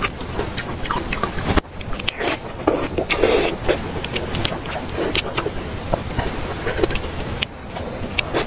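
Close-miked eating of fatty pork belly: chewing with wet mouth sounds, lip smacks and short clicks, busiest and loudest about three seconds in, over a steady low background rumble.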